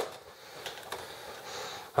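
A single sharp plastic click as a continuous-ink-system cartridge block is pushed home into an inkjet printer's cartridge bay. Faint rustling and light ticks of handling follow.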